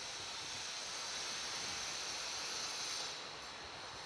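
A pencil scratching on paper while writing, heard as a steady soft hiss with a brief lull in the upper part of the sound near the end.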